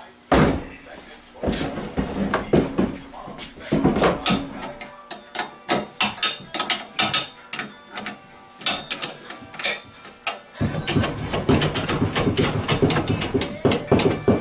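Metal clanks, knocks and clicks as the brackets and clamps of an Alaskan MkIII chainsaw mill are handled and tightened onto a Stihl chainsaw bar. The sharp clicks and knocks come irregularly, and are densest near the end.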